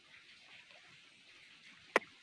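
Near-quiet ambience with a faint steady hiss, broken just before the end by one short, sharp click.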